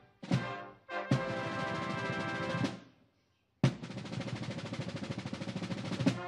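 Ceremonial band music: sustained brass chords over drum rolls and timpani, each phrase opening with a sharp hit. The music breaks off for about half a second a little past the middle, then comes back in.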